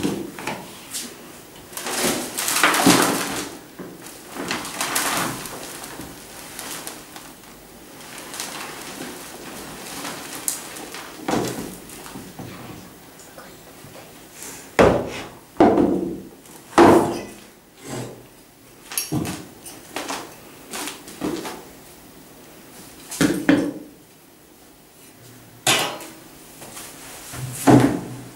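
Soil poured from a plastic container into a clear plastic storage box, with a gritty pouring rustle. Scattered knocks and thumps follow as the plastic containers are handled.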